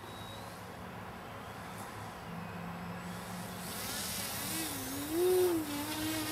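Electric motor and propeller of a radio-controlled kite plane running at low throttle, then throttling up in the last couple of seconds with a wavering whine that rises and falls as it comes in to land.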